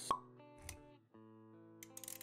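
Short intro jingle with sound effects: held musical notes, a sharp pop just after the start, a brief thud about halfway through, and quick clicks near the end.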